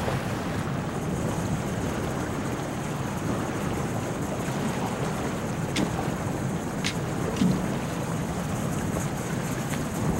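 Steady coastal wind and surf noise, with three or four brief high clicks about halfway through and later.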